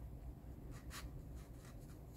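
Faint rubbing of paper as hands press and smooth a sheet of watercolor paper flat, with a soft brush of paper about a second in.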